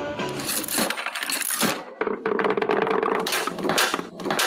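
Show-intro jingle: a fast run of metallic clinks and rattles over music, with a held tone from about two to three seconds in.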